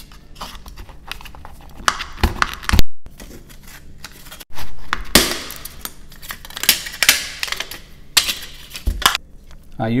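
Thin disposable plastic cup being cut and peeled off a cured silicone rubber mold: irregular crinkling, cracking and tearing of the plastic, with scraping rasps and sharp clicks. The sound cuts out abruptly twice.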